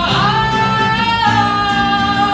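A man singing live into a microphone while playing an acoustic guitar, amplified. He holds one long note, then moves to a slightly lower held note a little over a second in, over steady guitar chords.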